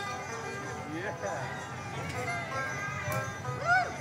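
A banjo playing a short riff, faint and distant, with scattered crowd voices, one rising call near the end.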